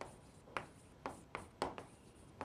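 Chalk writing on a chalkboard: a quick series of short taps and scrapes, about six strokes in two seconds.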